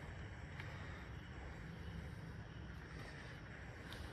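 Quiet shop background with a low steady hum, broken by two faint clicks, one about half a second in and one just before the end.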